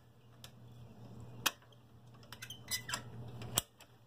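A few light, sharp metallic clicks from the homemade lever-and-bracket linkage that swings the friction-drive motor, worked by hand with the engine off. The clearest click comes about a second and a half in and another near the end, over a faint low hum.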